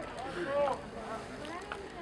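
Distant voices shouting across an open playing field, with one loud call rising and falling about half a second in, over a steady background hiss.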